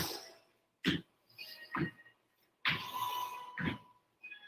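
A man breathing audibly through hip-bridge reps: two short, sharp breaths about a second apart, then a longer exhale about three seconds in.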